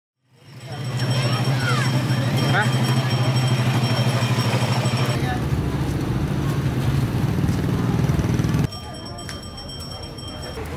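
Street ambience: a motor vehicle engine running with a steady pulsing hum, mixed with people's voices and a few short chirps. It fades in at the start and drops suddenly to a quieter background near the end.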